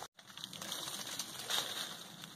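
Faint rustling and crunching of dry leaf litter and brush as someone moves over the forest floor, a little louder about one and a half seconds in.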